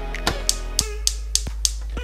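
Gas hob's spark igniter clicking about six times, sharp irregular ticks, while the burner fails to catch.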